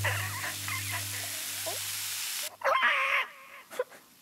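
A cartoon ostrich character making wordless vocal sounds, with a short louder one near the three-quarter mark. Under them a low hum and hiss fade out a little past halfway.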